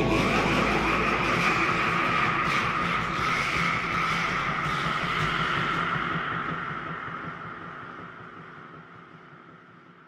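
A noisy, rushing sound that fades out slowly over about ten seconds as a track ends, with no clear melody or beat.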